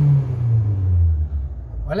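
Renault Logan 1.6 four-cylinder engine running, its speed falling back toward idle after a brief rise. It runs normally now that its ignition coil connector fault and fuel-clogged injectors have been fixed.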